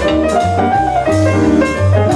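Jazz guitar and piano duo playing together: an archtop electric guitar and a grand piano in a steady, busy stream of notes over low bass notes.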